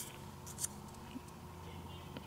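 Faint rustling and a few light clicks of paper die-cut pieces being handled and set down on a card.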